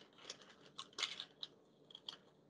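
Baking paper being handled and folded around soft butter: a few short, faint crinkles.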